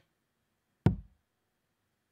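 A single steel-tip dart striking the dartboard about a second in: one sharp thud that dies away quickly.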